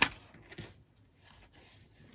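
A sharp tap as a small cardstock box is set down on a craft mat, followed by a few faint handling sounds.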